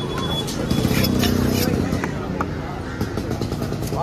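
Busy market background of voices and motor-vehicle noise, with scattered sharp knocks of a large knife on a wooden chopping block as fish is cut.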